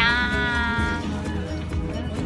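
Background music with a steady low bed, under a long, high-pitched drawn-out greeting, "annyeong", called by a voice in the first second.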